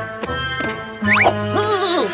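Children's cartoon background music, with a quick rising pitch glide a little past halfway.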